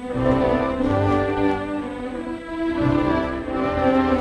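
Orchestral film score on bowed strings: violins holding sustained notes over recurring low cello notes.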